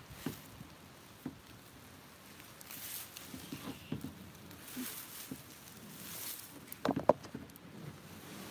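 Tree branches and foliage rustling in several short bursts as they are grabbed and pulled on to haul a kayak off the bank, with scattered small knocks and a few loud knocks about seven seconds in.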